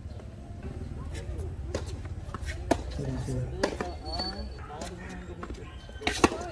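Tennis rally on a hard court: a string of sharp pops, about a second apart, as the ball is struck by rackets and bounces on the court. Voices chat in the background.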